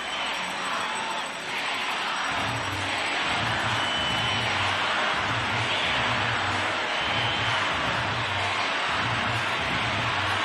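Large stadium crowd cheering steadily, swelling about two seconds in, with a regular low beat underneath about twice a second.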